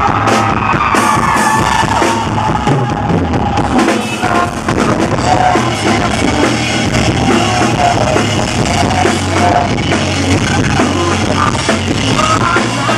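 Live rock band playing loud through a club PA: drum kit driving the beat under electric guitar, with a male lead vocal sung over it.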